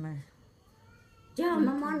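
A person's voice: a short vocal sound at the start, then, about one and a half seconds in, a loud, high-pitched, wavering voice that carries on past the end.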